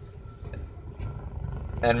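A steady low rumble fills a pause in a man's talk, growing slightly louder after about a second, and his voice comes back in near the end.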